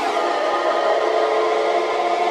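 Electronic tekno music: a sustained, many-note synthesizer chord held steady with no kick drum, the tail of a high falling sweep fading out at the start.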